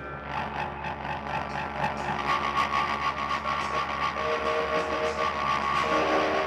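Live jazz-rock band playing: fast, busy drums and cymbals under long sustained notes, with a lower pair of held notes joining about four seconds in.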